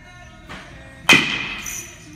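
A baseball bat striking a ball about a second in: a single sharp hit with a ringing tail that fades over about half a second, typical of a metal bat. Music plays underneath.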